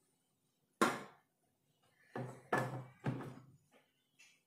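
Knocks and clunks of a flat stone being set down inside a clear plastic enclosure on coconut substrate: one sharp knock about a second in, then three more in quick succession near the end.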